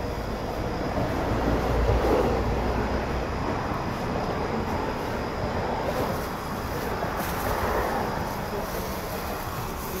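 Rustling and handling noise as plastic produce bags are picked up and packed into a larger plastic bag. It comes with a low rumble from movement on the phone's microphone, loudest about two seconds in.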